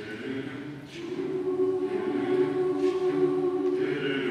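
Mixed choir of women's and men's voices singing sustained, held chords; the sound grows louder about a second in.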